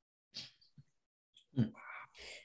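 A pause in speech, mostly silent, with a few faint short breath and mouth noises, the loudest about one and a half seconds in, just before talking resumes.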